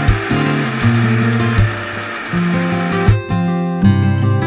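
Amazon Basics mixer grinder running in one short burst, grinding ginger and garlic into paste; it stops about three seconds in. Acoustic guitar background music plays throughout.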